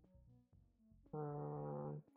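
A man's drawn-out 'uhh' hesitation, held for about a second near the end, over quiet background music with soft sustained notes.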